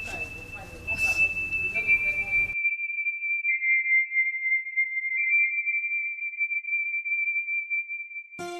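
Steady, high, pure electronic tones like a ringing in the ears. One tone is joined by a slightly lower second tone about two seconds in and a third, lower still, about a second and a half later. A woman crying sits under them for the first two and a half seconds, then all other sound drops out and only the tones remain.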